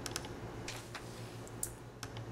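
A few scattered clicks and taps on a computer keyboard, over a steady low hum.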